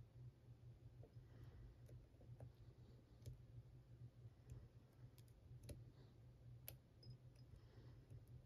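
Faint, scattered clicks of a lock pick working the pin tumblers inside an Abus 83AL/45 padlock's cylinder under light tension, the loudest click about two-thirds of the way in, over a low steady hum.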